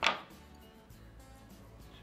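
A single sharp snip of small fly-tying scissors at the start, cutting the weak tips off peacock herl strands, followed by faint steady background sound.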